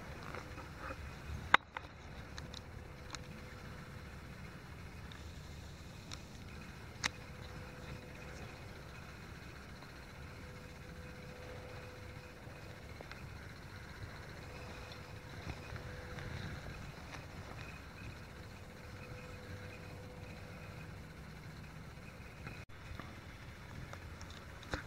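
Handheld camera noise while walking on a gravel trail: a low steady rumble, with one sharp click about a second and a half in and a smaller one around seven seconds.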